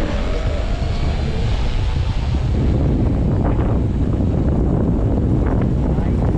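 Wind buffeting the microphone: a heavy, steady low rumble, with a few faint clicks in the second half.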